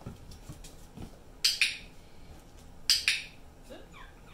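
Two loud double bursts of hissing noise, about a second and a half apart, then a young German Shepherd puppy gives a short rising yip near the end.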